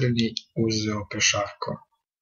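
Speech: a man talking, with a short pause about half a second in.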